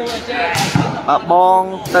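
A volleyball struck hard by a player's hand on a jump hit at the net, a sharp slap about half a second in. A second sharp hit of the ball comes near the end, with a man's commentary between the two.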